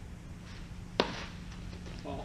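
A single sharp smack about a second in: a thrown baseball striking a young catcher's protective gear as he drops to his knees to block it.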